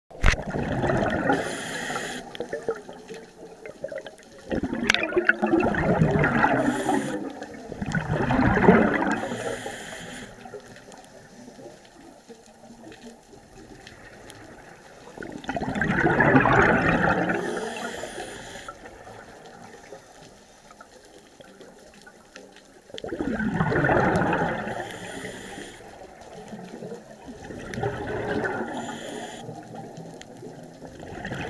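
Scuba diver breathing through a regulator underwater: each exhalation is a burst of rumbling, gurgling bubbles lasting a second or two, about six of them a few seconds apart, each followed by a short hiss of the next inhalation.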